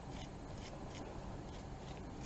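Faint, soft scratchy strokes of a wide-tooth comb and fingers working through wig fibers, repeating a few times a second.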